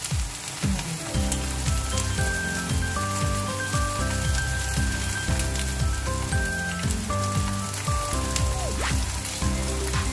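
A chive and Korean-mint leaf pancake sizzling in plenty of oil in a frying pan, a steady crackle, under background music.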